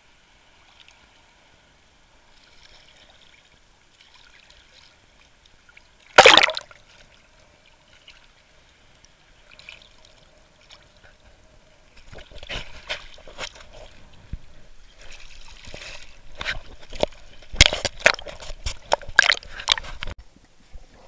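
Sea water sloshing and splashing against an action camera's waterproof housing at the surface, muffled through the case. There is one loud splash about six seconds in, then a run of splashes from about twelve seconds on, loudest near the end as the housing dips under.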